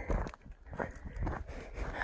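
Footsteps of a hiker walking on a dirt trail, a few soft steps.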